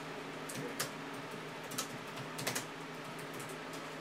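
A few light, irregular clicks of typing on a computer keyboard, over a faint steady hum.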